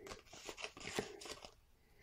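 Faint crackling and small ticks of cut adhesive vinyl being peeled and picked off its backing sheet with a fingernail, stopping about a second and a half in.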